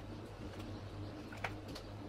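Low, repeated bird cooing over a steady low hum, with one sharp click about one and a half seconds in.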